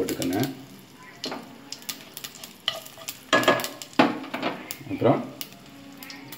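Mustard seeds, cumin and dried red chillies frying in hot oil in a nonstick pan for a tempering, sizzling steadily with scattered sharp crackles.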